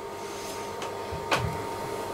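Steady faint hum with a light click and then a single sharper knock about halfway through: an egg being cracked against a bowl.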